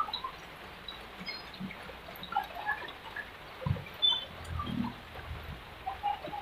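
Faint, scattered shouts and calls of young football players across an open pitch, with a few low thumps around the middle.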